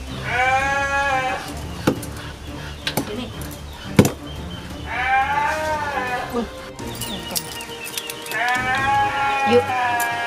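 Three drawn-out pitched cries, each about a second long, coming roughly every four seconds, with a few sharp smacks between them.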